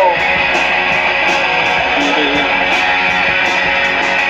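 Live band playing an instrumental passage: amplified electric guitars over drums with a steady beat.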